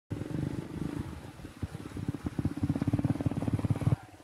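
A small engine running with a rapid low throb, growing louder toward the end and then cutting off suddenly.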